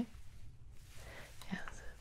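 A woman's soft, breathy whisper in a quiet pause, with a faint whispered word near the end.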